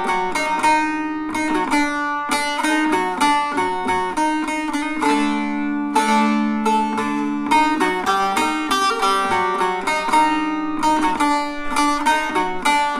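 Bağlama (Turkish long-necked saz) played solo in a fast run of plucked notes between sung verses, with a few notes held and left ringing for about two seconds midway.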